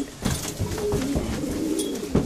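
Racing pigeons cooing in their loft, low calls repeating throughout.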